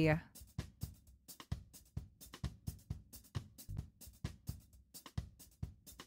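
Quiet background music with a steady drum-kit beat.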